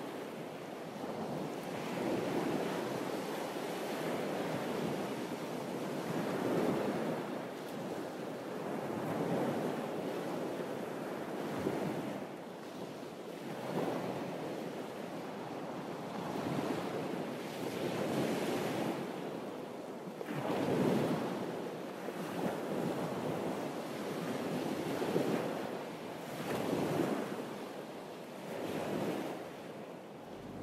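Small sea waves washing against a rocky shore, swelling and falling every couple of seconds, with wind.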